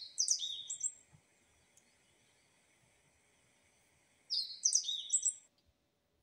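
A bird chirping: a quick run of high, sweeping chirps at the start and another run about four seconds later, over a faint steady high hiss.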